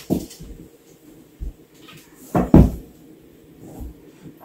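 Knocks and thumps of a wood-and-metal vanity frame being handled during assembly: a knock at the start, a low thump about a second and a half in, the loudest double knock about two and a half seconds in, and a lighter one near the end.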